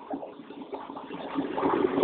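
Faint, steady vehicle running noise of a truck driving on the highway, heard in a lull between broadcast commentary, growing a little louder near the end.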